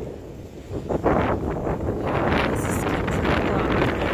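Strong windstorm gusts blowing straight onto the microphone, a loud rumbling buffet that grows louder about a second in.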